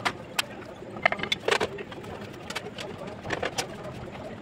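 Irregular sharp clicks and knocks from bricklaying work: a steel trowel and bricks knocking against the wall. The loudest cluster comes about a second and a half in.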